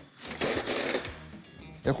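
A brief rasping rattle, about half a second in and lasting under a second, from the jar of Dijon mustard being handled and opened at the counter.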